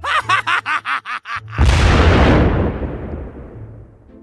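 A quick run of laughter for about the first second and a half, then a sudden loud explosion sound effect that fades out over about two seconds.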